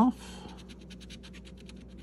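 A coin scratching the coating off a scratch-off lottery ticket in rapid short strokes, about a dozen a second, growing fainter after the first second.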